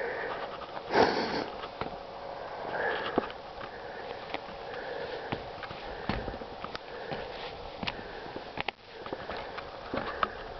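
Close breathing and sniffing of the person walking, with a loud sniff about a second in, together with scattered light footstep knocks and crunches on snow and wooden boards.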